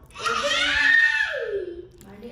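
A high-pitched voice letting out a long shriek that slides down in pitch near the end.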